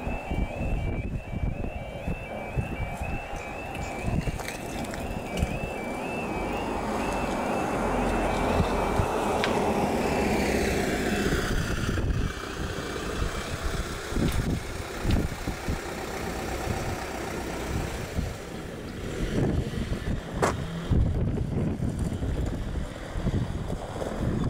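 A British level crossing's warbling two-tone road alarm sounds as the barriers come down, repeating about twice a second. It stops about halfway through, once the barriers are down. Meanwhile a road vehicle passes, its noise swelling and then falling in pitch.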